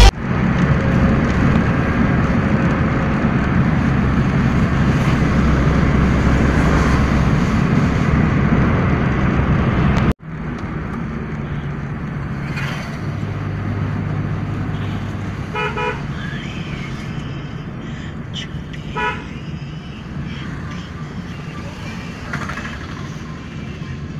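A pickup truck's engine running hard while its rear wheel spins in mud. After a sudden cut there is quieter road noise inside a moving car on a wet road, with two short horn toots a few seconds apart.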